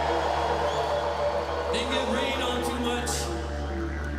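Live band intro music: a steady low drone, with a man's voice briefly vocalizing into the microphone about two seconds in.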